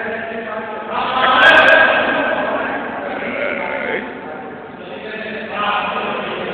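Raised human voices calling out, loudest in a long drawn-out cry about a second in, with three quick sharp clicks in the middle of it.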